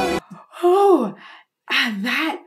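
A woman's astonished gasp, a voiced 'oh' that rises and then falls steeply in pitch, followed near the end by a second breathy exclamation. A recording of singing with orchestra is cut off abruptly just after the start.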